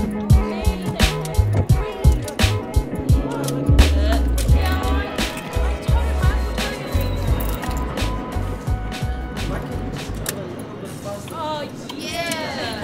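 Hip hop track playing an instrumental stretch: a steady drum beat over a low bassline. About ten seconds in, the bass drops out and the beat thins.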